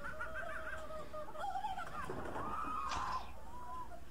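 High-pitched vocal squeals, held and wavering, with a sharper cry about three seconds in.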